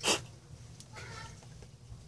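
A domestic cat meows once, briefly and high-pitched, about a second in, after a short sharp noisy burst right at the start.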